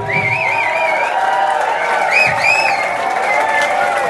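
Club crowd cheering and applauding right as a rock song ends, with shrill, wavering high calls rising out of it twice. A steady held note keeps ringing from the stage underneath.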